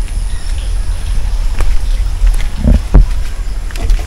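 A steady low rumble on the microphone, with a short grunt and a thump just before three seconds in as a man sits down on a bamboo bench.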